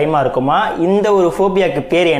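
Only speech: a man talking steadily.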